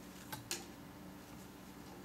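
Paracord being handled and pulled through while tying a snake knot: two sharp clicks in quick succession about half a second in, over a faint steady low hum.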